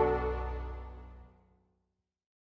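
A salsa band's final held chord, brass over a low bass, dying away within about a second and a half into silence: the end of a song.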